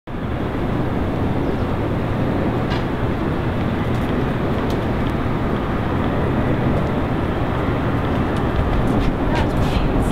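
Steady low rumble of street traffic, with a few faint clicks toward the end.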